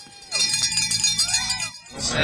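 Metallic ringing and jingling, starting about a third of a second in and going on steadily, over faint background voices.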